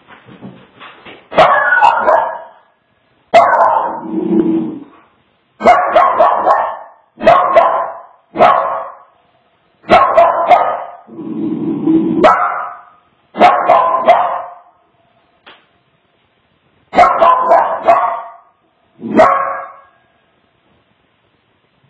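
Small dog barking repeatedly: about a dozen sharp, loud barks spaced a second or two apart, two of them lower and longer.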